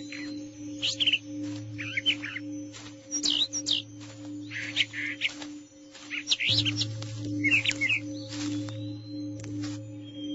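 Birds chirping and twittering in quick clusters of short rising and falling notes, a new burst every second or so, over a steady low humming drone of ambient music.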